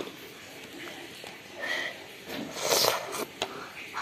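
A child's breathy mouth noises while eating pasta from a spoon: a few short, noisy breaths against a quiet room, the loudest a little before the end.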